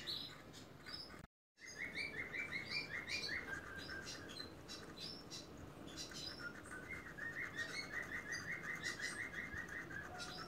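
Small birds chirping in the background, with quick runs of short chirps and scattered higher calls. The sound cuts out completely for a moment about a second in.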